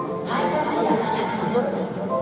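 Music mixed with voices, echoing across a baseball stadium, as from the ballpark's sound system and the crowd.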